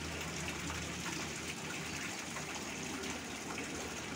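Steady rushing, water-like noise with a low hum underneath.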